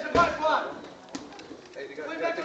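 Indistinct voices, with a dull thud right at the start and a single sharp knock a little past a second in.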